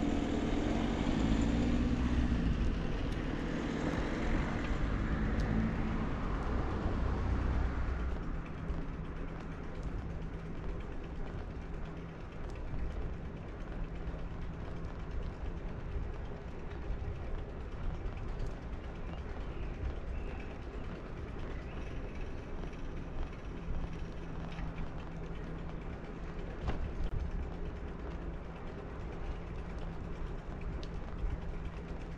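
Bicycle ride sounds: the rear freewheel hub ticking in a steady ratchet pattern, with creaks and rattles from the bike and tyre-on-asphalt noise. The first eight seconds carry a louder, steadier rumble that drops off after that.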